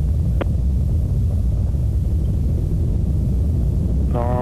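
Atlas V rocket in ascent, its RD-180 main engine and two solid rocket boosters heard as a steady, deep rumble, with one brief click about half a second in.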